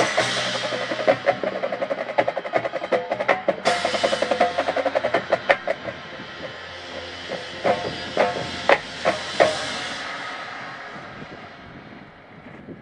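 Marching percussion ensemble playing: mallet keyboards run a fast line over drums and cymbal wash for about five seconds, then the music thins to a few separate accented hits and dies away near the end.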